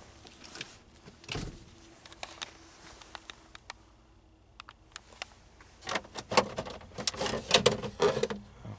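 Scattered clicks and a thump of a car's plastic interior trim being handled, then a louder run of clicks and rattles near the end as the glove box is opened.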